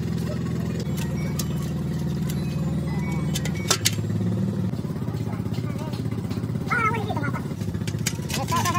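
An engine running steadily, its pitch shifting slightly about one second and three and a half seconds in. There is a sharp knock just before four seconds.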